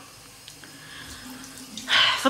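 Bathroom tap running steadily into a sink, a soft even hiss of water.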